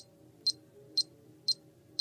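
Metronome set to 118 beats per minute, ticking steadily at about two short, high-pitched clicks a second.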